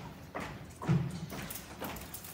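Footsteps on a wooden stage floor, about two a second, with the heaviest step about a second in.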